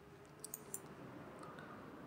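A few faint computer mouse clicks, about half a second in, as menu items are selected.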